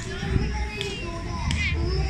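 Children's voices at play: short high calls and chatter, with a steady low rumble underneath.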